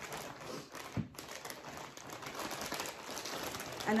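Clear plastic bags crinkling and rustling as supplies are handled in them and set out on a table, with a single light knock about a second in.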